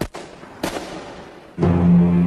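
Dramatized revolver shots: two sharp bangs about two-thirds of a second apart, each trailing off in reverberation. Near the end a low, sustained music tone swells in.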